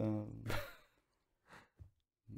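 A man's drawn-out last word fading, then a short breathy sigh about half a second in; the rest is near silence broken by two faint ticks.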